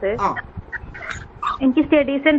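A participant's voice coming through an online video call, in short broken stretches with gaps between.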